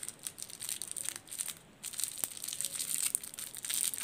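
A small clear plastic wrapper crinkling and crackling as fingers work it open to get a toy ring out. The crackles come irregularly, with a short lull about one and a half seconds in.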